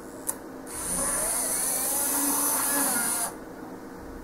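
A sharp click, then the tiny electric motor of a Z scale model locomotive runs with a high-pitched whine for about two and a half seconds and cuts off suddenly.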